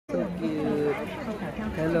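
Speech: people's voices chatting, with a drawn-out greeting of "hello" near the end.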